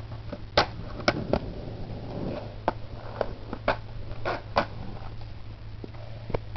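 Skateboard on concrete: a string of light, irregular clacks and knocks, about a dozen over several seconds, over a steady low hum.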